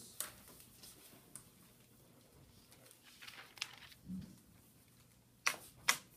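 Dry-erase marker dabbing a quick series of short strokes onto a whiteboard, heard as faint scattered ticks and squeaks, with two sharper taps near the end.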